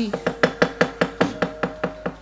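A wayang kulit dalang knocking rapidly and evenly on the wooden puppet chest, the cempala and kecrek strikes coming about eight a second. A faint steady tone holds underneath.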